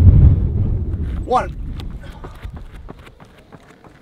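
Wind rumbling on the microphone, loud at first and dying away over the first two or three seconds, followed by faint scattered clicks.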